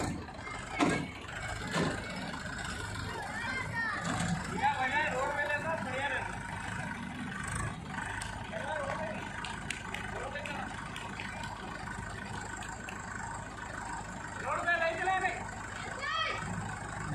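Diesel tractor engine idling steadily, with voices talking over it at times.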